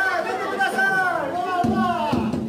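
Excited chatter and calls from a group of adults and children in a large hall with reverberation. Near the end, a rapid drum roll starts up on the drums.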